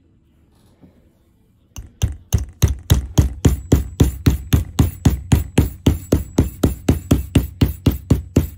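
Hammer tapping a metal key fob clamp shut onto a folded canvas strap: quick, even strikes, about three or four a second, starting about two seconds in.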